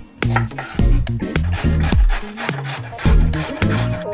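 Background music with a steady bass beat, over the rasping of a carrot being grated on a metal box grater.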